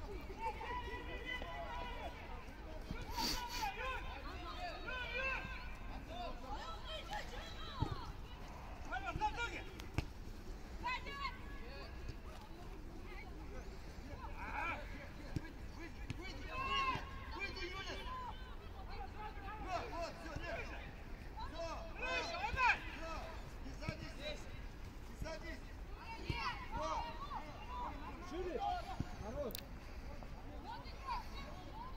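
Football players' short shouts and calls scattered across an open pitch during play, with no continuous talk. A couple of sharp knocks are heard, about eight and ten seconds in.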